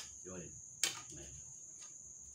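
Crickets chirring steadily at a high pitch. About a second in there is a single sharp click.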